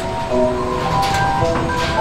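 Carousel music playing, a tune of held notes that step from one to the next, over a low rumble from the turning carousel.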